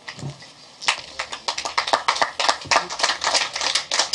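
A small seated audience applauding, many separate hand claps. The clapping starts about a second in and keeps going.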